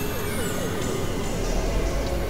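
Experimental electronic noise music from synthesizers: a quickly repeating warbling zigzag tone over a dense hiss, with a deep hum coming in about halfway through.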